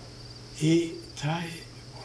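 A man's voice says a word or two over a steady low hum and a faint high-pitched insect chirping, about two chirps a second.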